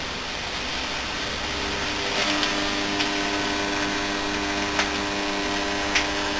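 Burnt-out RF welder transformer buzzing under mains power with a steady hiss, its shorted secondary winding smoking; a steady buzz with several overtones comes in about two seconds in.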